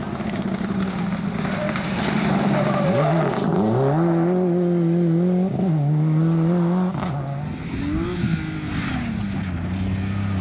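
Rally car engine under hard acceleration on a special stage: the engine note climbs and then drops back at each gear change, passing loudest in the middle.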